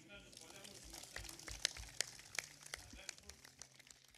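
A quiet pause at a panel table. Papers rustle and are handled near the table microphones, with scattered small clicks and a faint murmur of voices.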